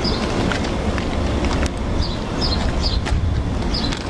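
School bus engine idling, a steady low rumble, with a few light footsteps on pavement.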